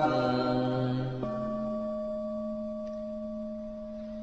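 A chanting voice's held note trails off, then about a second in a Buddhist bowl bell is struck once and rings with a steady, slowly fading tone.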